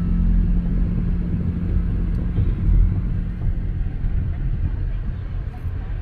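Car driving: a steady low rumble of road and engine noise, easing off slightly toward the end.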